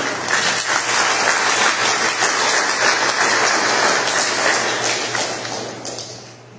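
Applause from a church congregation: many people clapping steadily, dying away at the end.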